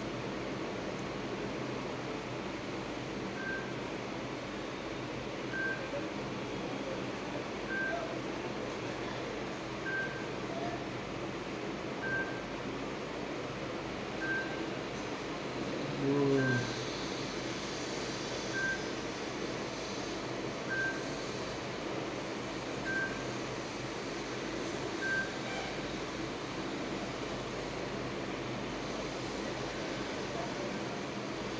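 Steady hiss with a faint short high beep repeating about every two seconds, and one brief louder low sound about halfway through.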